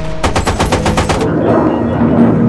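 Machine gun firing one rapid burst lasting about a second, then stopping.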